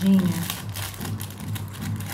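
Small plastic bag crinkling, with many short clicks, as a pair of earrings is handled and taken out of it.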